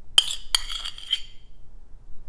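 A steel spoon clinking against a small stainless steel bowl: two sharp clinks in quick succession, then a few lighter ones, each ringing briefly.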